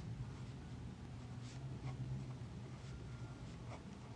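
Faint scratching of a pen writing on paper in short strokes, over a low steady hum.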